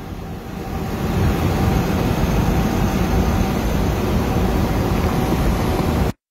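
Steady low rumble of road and engine noise inside a moving vehicle travelling along a highway, growing louder about a second in and then holding steady.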